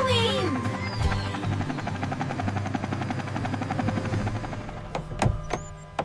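Cartoon helicopter rotor whirring steadily over background music, with two sharp clicks a little past five seconds.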